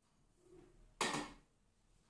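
A single sharp knock of a glass bowl against the rim of a food processor's stainless steel mixing jug, about halfway through, as flour is tipped in, with a faint soft sound just before it.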